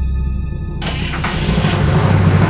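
A car engine being started with the ignition key and running, under dramatic background music; a louder rush of sound comes in a little under a second in.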